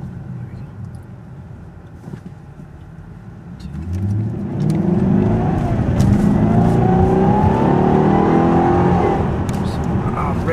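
A 2007 Jaguar XKR's supercharged V8, heard from inside the cabin. It runs at a low steady note at first, then about four seconds in it gets much louder and its pitch climbs for several seconds as the car accelerates hard.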